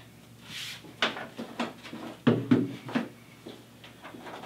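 A brief rustle, then several irregular knocks and clicks as the black metal Thermaltake Core P5 case panel is handled and something on it is opened.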